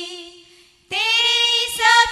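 Women singing a Hindi devotional bhajan into microphones, unaccompanied: a long held note fades out, and after a brief pause a new sung phrase starts about a second in.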